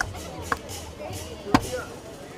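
Three sharp knocks, at the start, about half a second in and about a second and a half in, the last the loudest.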